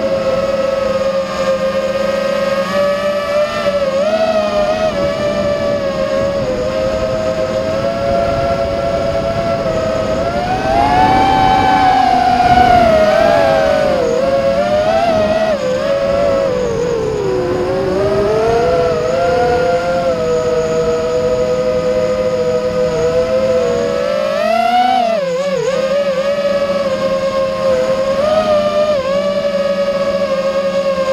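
Small electric aircraft's motors and propellers, heard from the onboard camera: a steady whine with a lower hum beneath it. The pitch rises and gets louder about ten to thirteen seconds in, dips around seventeen seconds, and wavers briefly near twenty-five seconds as the throttle changes.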